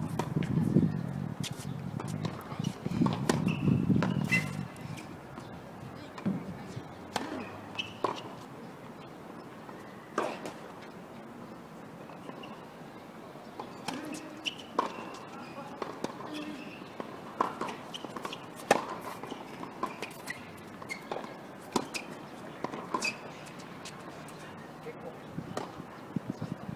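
Tennis balls struck by rackets and bouncing on the court during play, a series of sharp pops spaced a second or more apart, the loudest one a little past the middle.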